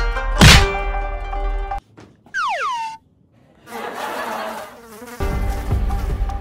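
A plastic fly swatter smacks down once, loudly, about half a second in, over light plucked background music. The music then stops, a cartoon falling whistle slides down in pitch, and a fly buzzes for over a second before the music comes back near the end.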